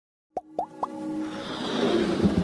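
Animated logo intro sting: three quick pops, each rising in pitch, about a quarter second apart, followed by a swelling whoosh over a held tone.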